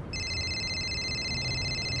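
A phone ringing: a high, rapidly pulsing trill that starts abruptly and cuts off near the end.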